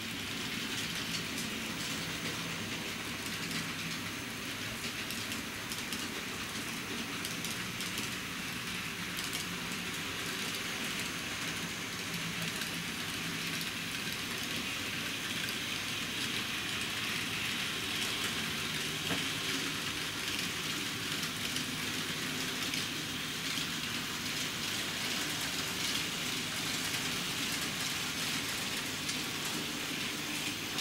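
N-scale model trains running on the layout's track: a steady hiss of small wheels rolling on rails, with a faint low hum at times.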